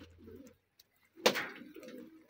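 Pigeons cooing, low and warbling, with a single sharp knock a little over a second in.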